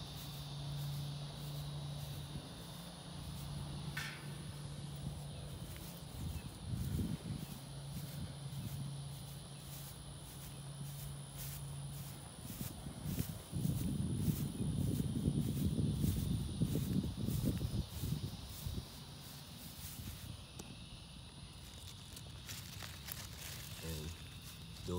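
Footsteps on a grass lawn as someone walks, over steady insect chirping. A low hum runs through the first half, and a louder low rustle comes about halfway through.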